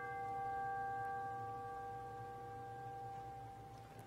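A struck bell ringing and slowly dying away, its higher overtones fading first and the rest gone by the end: a memorial toll after a departed member's name is read.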